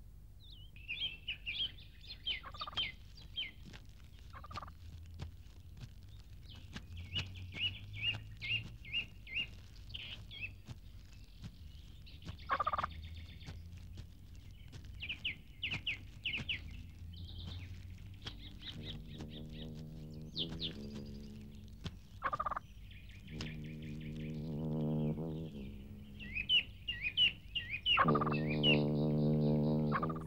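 Birds calling in repeated high chirping phrases. In the second half, low sustained tones come in, stepping up and down in pitch and loudest near the end.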